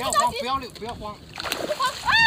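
A hooked fish splashing at the water's surface while it is played on a hand pole, under people's voices talking.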